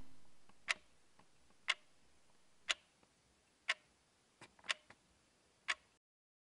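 Wall clock ticking, one sharp tick a second, six in all, with a few fainter clicks between the fourth and fifth ticks. The tail of the music fades out in the first half second.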